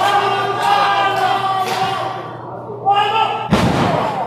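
Shouting voices ring through a large hall, then about three and a half seconds in a single heavy thud sounds as a wrestler's body hits the wrestling-ring mat, with a short ring from the ring boards afterward.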